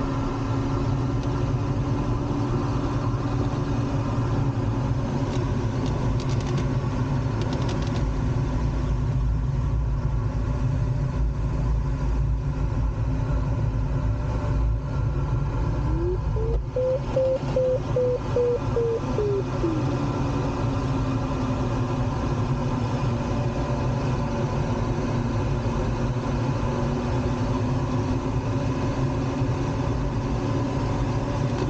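Steady rush of airflow in a glider cockpit, with a variometer's low continuous tone. About sixteen seconds in, the tone glides up into a higher, quickly pulsing beep for some three seconds, then slides back down: the beeping marks the glider climbing in lift.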